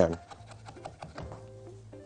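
Chef's knife mincing fresh basil on a wooden cutting board: faint, quick taps of the blade against the board.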